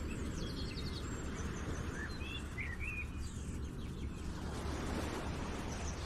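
Steady low outdoor background noise with a few short bird chirps about two to three seconds in.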